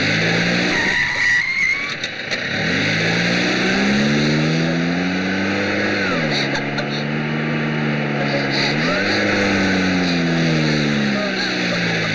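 A van's engine running hard at high revs, its pitch dropping about six seconds in and climbing again about three seconds later, then fading near the end, over a steady hiss.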